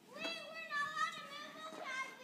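Children's high-pitched shouting at play, in drawn-out wordless calls lasting over a second.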